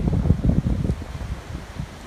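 Wind buffeting the microphone: a low, fluttering rumble that is strongest in the first second, then eases.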